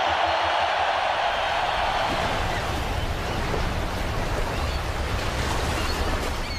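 A stadium crowd's roar fades out over the first two seconds and gives way to the steady wash of ocean surf.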